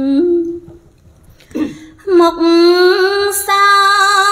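A woman singing Khmer smot, Buddhist chanted verse, solo and unaccompanied: a long held note ends about half a second in, and after a short breath she takes up another long, slowly wavering note about two seconds in.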